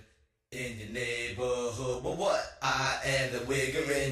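Chant-like sung vocal phrases in a hip-hop track, fairly quiet, with a short break near the start and another just past halfway.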